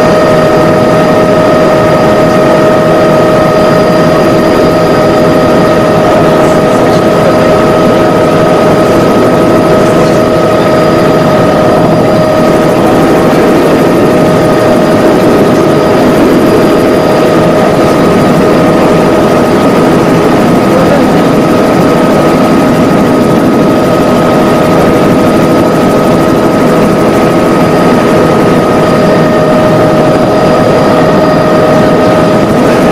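Steady engine drone of an aircraft in flight, heard from inside the cabin, with a constant high whine held over it.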